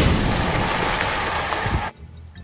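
A car driving past on a wet road, its tyres hissing on the wet asphalt as it fades away, cut off suddenly near the end.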